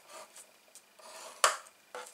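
Metal scoring stylus scraped along a groove of a Simply Scored scoreboard, scoring a half-inch line into card stock, with faint scratchy rubbing. A sharp click about one and a half seconds in.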